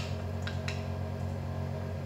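A steady low hum runs under a fork stirring an egg-and-milk batter in a ceramic plate, with a couple of light clicks of the fork against the plate about half a second in.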